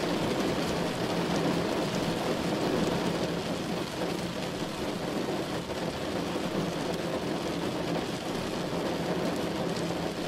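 Heavy rain falling on a car's windshield and roof, heard from inside the moving car as a steady wash of noise with scattered drop ticks, over the car's road noise.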